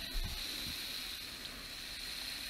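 A pause in speech: steady low background hiss of the recording with a faint steady high whine, and a soft low bump just after the start.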